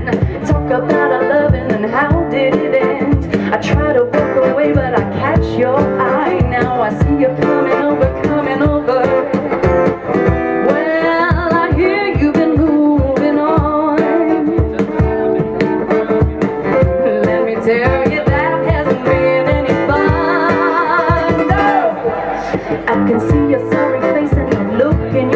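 Live acoustic duo music: a woman singing over strummed acoustic guitar with a steady percussive beat.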